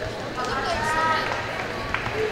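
Indistinct voices in a large hall, with one voice loudest about a second in and a short click near the end.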